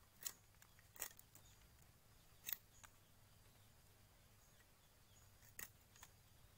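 Near silence broken by a handful of faint, sharp clicks of a machete blade cutting into a thin cassava stick, whittling a small peg.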